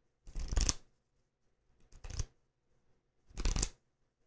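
Short rustling handling noises repeating about once every second and a half, each lasting under half a second.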